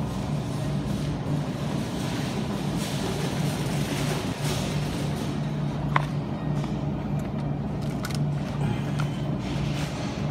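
Grocery store ambience: a steady low hum with background music playing over it, and a single short click about six seconds in.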